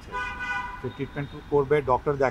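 A vehicle horn sounds once near the start: a single steady honk lasting under a second. A man's voice follows.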